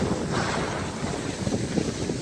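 Wind rushing over the microphone of a camera carried by a skier moving downhill, with the hiss of skis sliding on packed snow.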